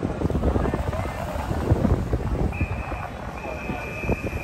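Crowd of football fans chattering outdoors, with wind buffeting the microphone in an uneven low rumble. About halfway through, a steady high-pitched tone sounds, breaks off briefly and resumes.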